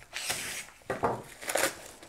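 A knife slitting open a plastic mailer bag, a scratchy hiss through the first second, followed by a few short crackles of the plastic as the bag is pulled open.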